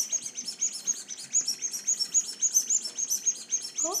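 Toy ball squeezed so that it chirps: a rapid, even run of high chirps, about six a second.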